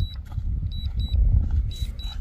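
Low, uneven rumble of wind buffeting the microphone outdoors, gusting strongest a little after a second in, with faint short high beeps now and then.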